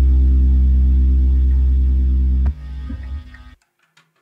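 Heavy fuzz-driven stoner rock band holding a loud, low droning final chord, which stops abruptly about two and a half seconds in; a short fading tail dies out about a second later, leaving near silence.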